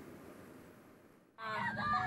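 Ambulance siren, heard from inside the moving ambulance, cutting in suddenly about a second and a half in with a long wailing tone that slowly falls in pitch; before it there is only a faint hiss.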